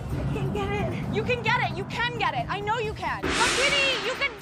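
Excited women's shrieks and shouts, several high voices overlapping and swooping up and down in pitch, with a louder, harsher scream near the end.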